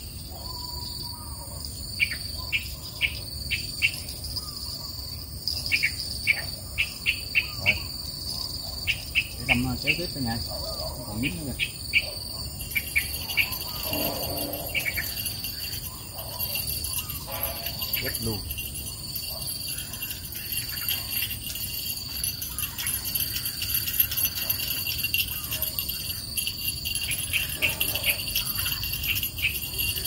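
Insects keep up a steady, high-pitched drone in riverside vegetation. Over roughly the first twelve seconds it is broken by a quick run of short sharp clicks and taps, which are the loudest sounds.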